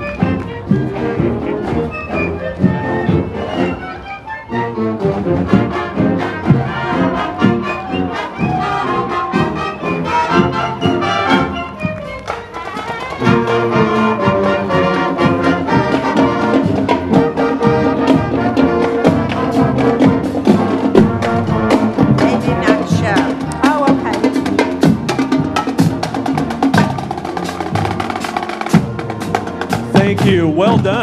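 High school marching band playing as it marches past: brass and saxophones over a steady drum beat. The band gets louder about 13 seconds in.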